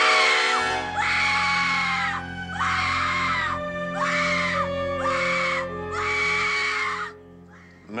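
A woman screaming again and again, about six long shrieks in a row with short breaths between them, over a sustained low orchestral chord.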